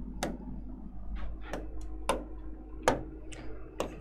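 Light, irregular clicks and taps from a pen at a writing board, about seven in four seconds, over a low steady hum.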